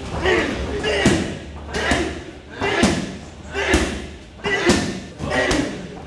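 Gloved Muay Thai strikes landing in a steady rhythm, about one a second. Each thud comes with a short grunting exhalation from the fighter.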